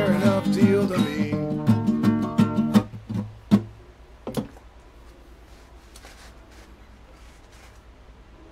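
Acoustic guitar strumming that stops about three seconds in, followed by two single strums about a second apart.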